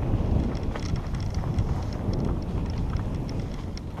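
Mountain bike rolling fast down a dirt forest trail: a continuous rumble of tyres over dirt and leaves, with wind buffeting the microphone and light rattling ticks from the bike.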